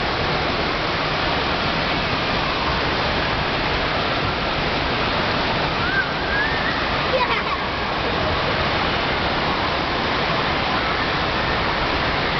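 Steady rush of water pouring down a fiberglass water slide, with a short rising voice, like a child's squeal, about six seconds in.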